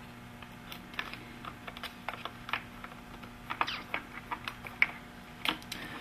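Small irregular clicks and taps of fingers handling a circuit board and seating a ribbon cable connector, several a second and busier in the second half, over a faint steady hum.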